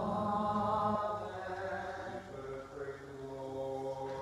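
Byzantine liturgical chant sung by male voices in long held notes, the pitch stepping down about a second in.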